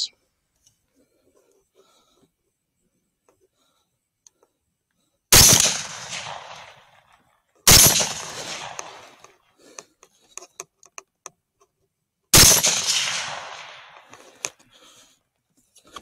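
6.5 Grendel rifle fired three times, the shots about two and a half and then nearly five seconds apart, each sharp crack trailing off in a rolling echo. Faint small clicks come between the second and third shots.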